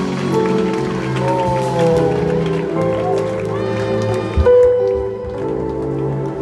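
Live gospel band music: sustained keyboard chords with a voice over them, and a few drum thumps about four and a half seconds in.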